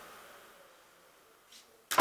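A quiet stretch, then a sudden swish near the end that fades within about half a second, like an edited whoosh effect laid over the cut.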